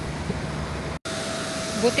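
A low outdoor rumble is cut off abruptly about a second in. It is followed by a steady, even whine over a hiss from a jet airliner's turbine running on the airport apron.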